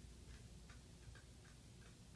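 Near silence with faint, evenly spaced ticking, a little over two ticks a second.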